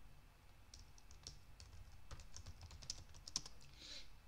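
Typing on a computer keyboard: a quick run of faint key clicks, starting under a second in, as a short line of code is entered.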